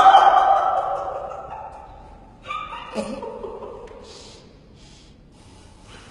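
A person's voice: a drawn-out, falling vocal sound lasting about two seconds, a shorter one about two and a half seconds in, then a few breaths.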